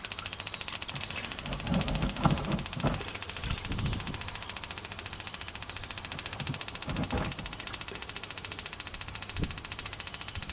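The oil distiller's feed pump running, a rapid, even ticking, with a few low thumps about two to four seconds in and again near seven seconds.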